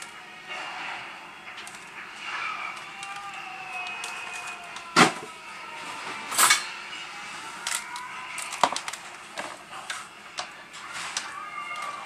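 Sharp clicks and clatters of kitchen utensils being handled at a counter, the loudest two about five and six and a half seconds in, over faint background voices.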